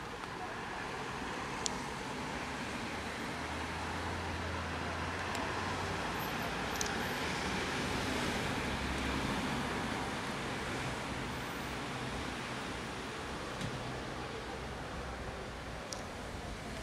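Steady road traffic noise that swells to its loudest about eight seconds in, with a low engine hum from a passing vehicle a few seconds in. A few faint isolated clicks sit on top.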